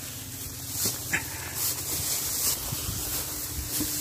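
Wet cast net being hauled out of the canal and dragged over grass, in several short rustling, swishing bursts, with one brief sharp high sound about a second in.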